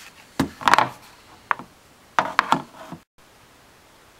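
Hard plastic knocks and clicks, in two short clusters about half a second and about two seconds in with a single click between, as a cabin air filter is pushed down into its plastic housing.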